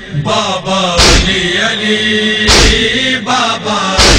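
A man chanting a noha, a Shia lament, in wavering melismatic lines over a steady drone, with a loud sharp beat keeping time about every second and a half.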